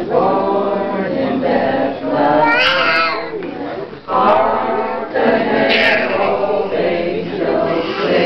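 A group of people singing together, several voices overlapping in held, wavering notes, with higher rising notes about two and a half and six seconds in.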